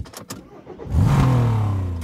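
A car engine being started with the key: a few clicks, then about a second in the engine catches and revs up quickly before holding a steady run.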